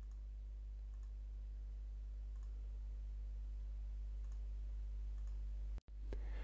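A few faint computer mouse clicks, roughly a second apart, over a steady low electrical hum.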